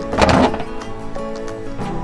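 Background acoustic guitar music, with a short burst of noise about a quarter second in, the loudest thing here.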